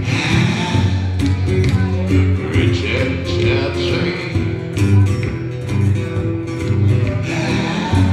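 A man singing into a microphone while strumming a steel-string acoustic guitar in a live solo performance. The guitar keeps up a steady strummed rhythm under the voice throughout.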